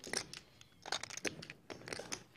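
Poker chips clicking at the table: a few short clusters of sharp clicks as chips are handled while a bet goes in.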